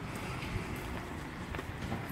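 Footsteps and a baby stroller rolling along a paved street, over a low steady rumble, with a few faint knocks.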